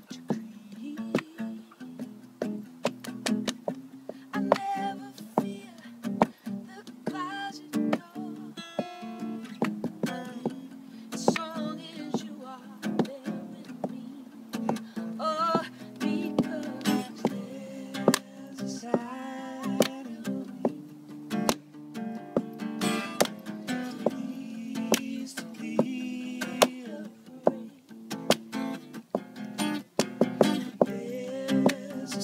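Acoustic guitar strummed in an unplugged band passage, steady chords with sharp percussive hits running through it.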